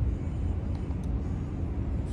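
Low, steady outdoor rumble, the kind of background noise that traffic or wind on the microphone makes, with no speech.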